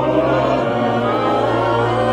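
A choir singing with vibrato over a steady low held note.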